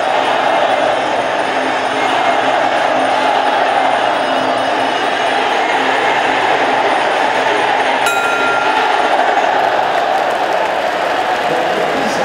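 Steady crowd noise from spectators shouting at a Muay Thai bout, mixed with ringside sarama music. A brief high tone sounds about eight seconds in.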